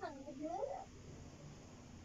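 African grey parrot vocalizing: a short note, then a longer call that dips and rises in pitch, in the first second.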